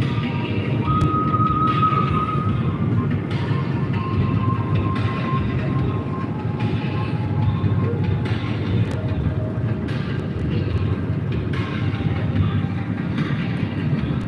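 Steady road and tyre noise inside a car's cabin at motorway speed, a low rumble with a few faint high tones over it.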